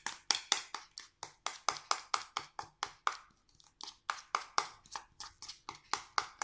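A utensil beating a wet egg-white and ground-walnut paste in a ceramic bowl, clicking against the bowl about four times a second, with a short pause about three seconds in.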